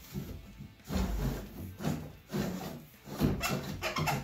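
Long flexible electrician's drill bit being pushed down inside a wall cavity, its shaft scraping and rubbing against wood and plaster in several short bursts.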